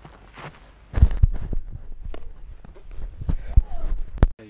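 Handling noise as an action camera lying in dry grass is picked up and held: a run of loud low thumps and clicks with rustling, starting about a second in.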